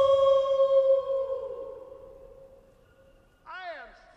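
A girl's long, high scream as she falls. It is held on one pitch, then fades and drops away in pitch about a second and a half in. Near the end come a few short sounds that swoop up and down in pitch.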